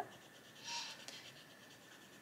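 Faint scratch of an Arteza Expert coloured pencil shading on paper, a soft stroke about half a second in, then only room tone.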